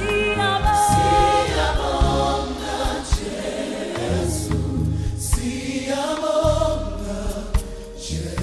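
Gospel choir music: several voices singing together over low bass notes and a light steady beat.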